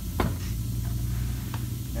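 Postform laminate countertop piece being flipped over and set down on a carpet-covered bench: one sharp knock just after the start and a lighter tap near the end, over a steady low hum.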